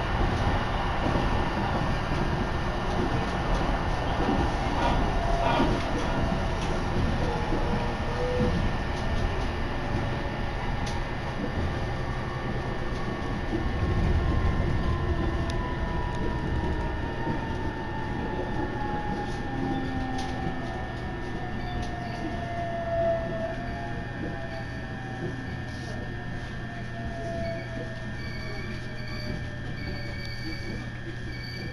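Electric train running on the rails, heard from inside the carriage, with a steady low hum and track noise. From about twelve seconds in, a motor whine falls slowly in pitch and the whole sound eases off as the train slows for its next station.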